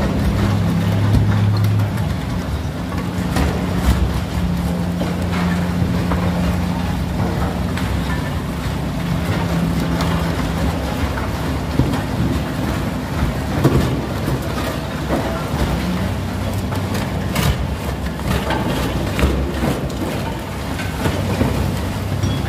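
Kobelco gyratory crusher running on hard iron ore: a steady loud low drone of the machine, with scattered sharp cracks and knocks as ore lumps are broken in the crushing chamber.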